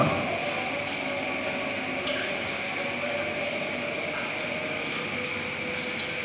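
Steady background hiss with a faint, even high-pitched whine running through it, and no speech.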